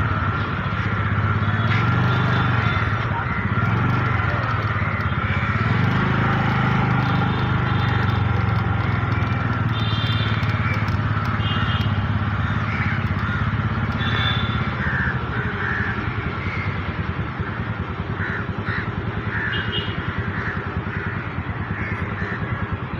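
Motorcycle engine running steadily, a little quieter in the second half.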